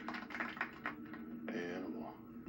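Show audio played through a CRT television's small speaker: a quick run of about eight sharp clicks over the first second, then a brief pitched sound halfway through. A steady low hum runs beneath.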